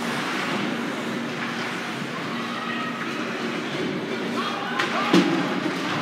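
Ice hockey rink during play: low murmur of spectators in the stands over a steady hum, with a few sharp knocks from sticks and puck on the ice, the loudest a crack about five seconds in.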